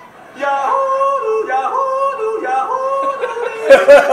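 Yodeling from a film clip played over a lecture hall's speakers: a voice starting about half a second in and leaping back and forth between low and high held notes. A few sharp knocks near the end are the loudest moment.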